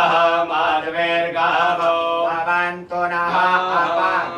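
Vedic Sanskrit mantra chanting, recited in a continuous melodic intonation with a brief pause for breath near three seconds in.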